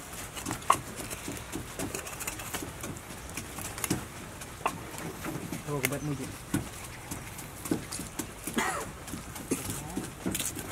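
Meat cleaver cutting through raw goat meat along the ribs, with scattered sharp clicks and knocks as the blade meets bone. A short pitched call, voice or animal, sounds about six seconds in and another near the end.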